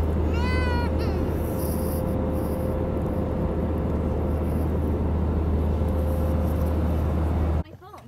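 Steady in-flight jet airliner cabin noise: a deep engine and airflow rumble with a faint steady hum. A brief high-pitched call rises and falls about half a second in, and the rumble cuts off suddenly near the end.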